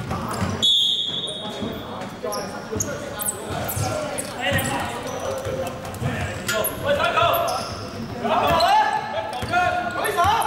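Basketball being dribbled on a hardwood sports-hall floor during play, its bounces echoing in the large hall, with players' voices calling out.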